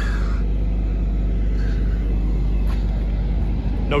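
A Ford F-150's EcoBoost V6 idling: a steady low rumble.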